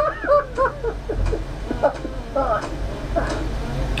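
Indistinct speech in short stretches, over a steady low rumble.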